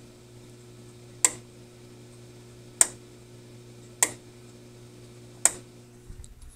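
Four sharp clicks about a second and a half apart, from controls on a CB radio being worked, over a steady low hum.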